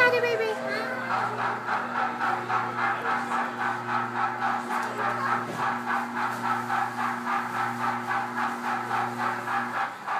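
Coin-operated kiddie train ride playing its electronic sound loop: a steady rhythmic pattern of about three pulses a second over a held low hum, which stops just before the end as the ride finishes.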